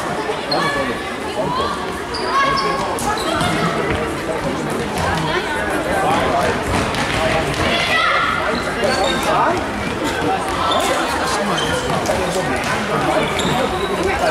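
Indoor soccer ball being kicked and bouncing on a wooden sports-hall floor, with voices calling, all echoing in the large hall.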